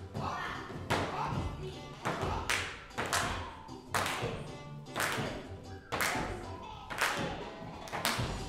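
A skipping rope slapping the wooden stage floor with each turn, a sharp tap roughly once a second, as a child jumps it, over background music.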